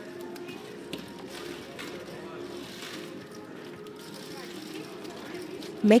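Casino table ambience: a steady room murmur with faint background music, and a few light clicks of chips as the dealer clears the losing bets off the roulette layout.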